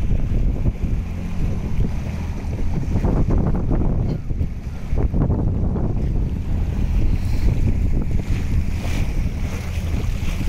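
Outboard motor running on an inflatable boat moving through floodwater, under a steady low rumble of wind buffeting the microphone, with water washing past the hull.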